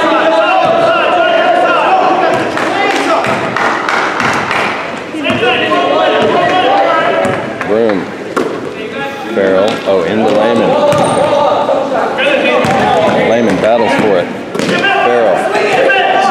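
A basketball being dribbled on a hardwood gym floor, with sharp bounces throughout, sneakers squeaking and spectators' voices echoing in the hall.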